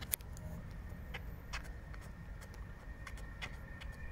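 Light footfalls of a slow jog on a synthetic running track, short soft clicks coming irregularly two or three times a second, over a low steady rumble.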